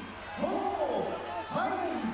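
A man's voice calling out in drawn-out shouts about once a second: the referee counting over a knocked-down kickboxer, in a large arena hall.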